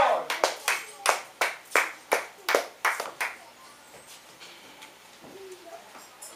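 Congregation clapping hands in a steady beat, about three claps a second, which dies away about halfway through.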